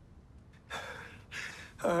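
A man's two short, audible breaths, then the start of a spoken "Oh" at the very end.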